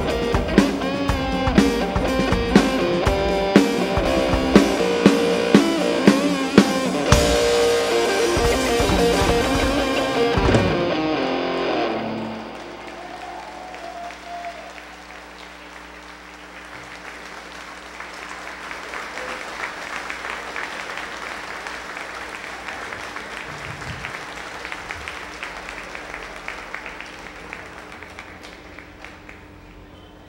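Symphony orchestra with a lead electric guitar and drum kit playing the last bars of a rock piece, which stops about eleven seconds in. Audience applause follows, swelling and then fading away near the end.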